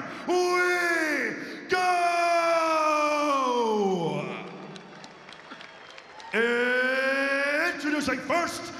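A man's announcing voice in long, drawn-out calls, three held syllables with the pitch sliding down on each, echoing in an arena. Between the second and third call there is a quieter stretch of faint crowd noise.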